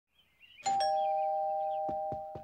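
Two-note doorbell chime, a higher 'ding' then a lower 'dong' a moment later, both notes ringing on steadily.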